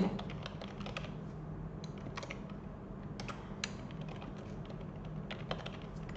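Typing on a computer keyboard: light key clicks in short, irregular runs.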